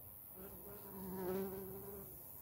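A bee buzzing as it flies close past: a hum that swells in about half a second in, is loudest a little past the middle, and fades away near the end.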